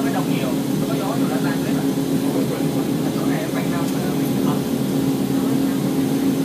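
Steady running drone of the Montenvers electric rack railway train heard from inside the carriage as it descends, with a constant low hum. Faint voices talk in the background.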